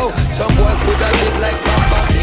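Hip-hop backing music with rapping, over which a mountain bike's tyres roll and scrape over dry packed dirt as it rides past close by.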